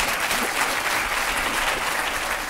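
Studio audience applauding, a steady dense clapping.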